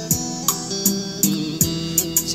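Instrumental passage of a Vietnamese song, guitar over a drum beat with regular hi-hat ticks, played back through a JBZ 107 karaoke trolley speaker with a 25 cm bass driver as a sound demonstration.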